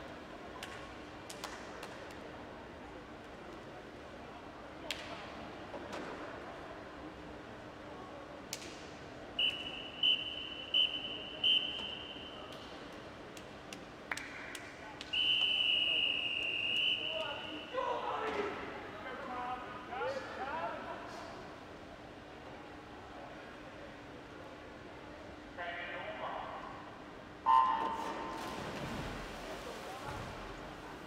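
Referee's whistle at a swimming race start: four short blasts about ten seconds in, then one longer blast a few seconds later calling the swimmers up onto the blocks. Near the end the electronic start signal sounds suddenly, the loudest moment, starting the race.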